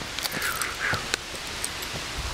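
Steady rain falling, with scattered drops tapping close by.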